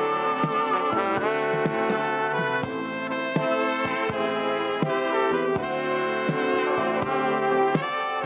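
Live brass band playing an instrumental passage: trumpets, trombones and saxophones holding full chords, with light percussive hits underneath.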